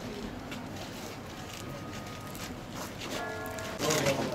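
Outdoor ambience. A short held musical note with overtones sounds for under a second near the end.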